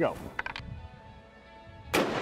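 A single rifle shot just before the end, sharp and sudden, over faint steady background music.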